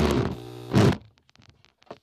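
Corded power drill driving a screw. The motor runs hard, slows down, gives one short last burst and stops about a second in. Faint clicks follow.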